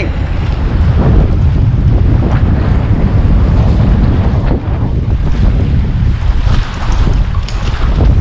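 Strong wind buffeting the microphone, a loud, steady low rumble, over choppy water.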